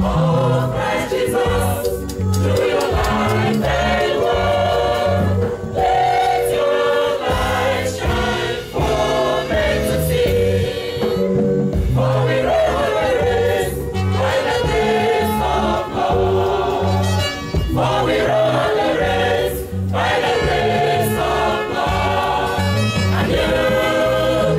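Praise-and-worship choir singing a gospel anthem over a steady, beat-driven accompaniment.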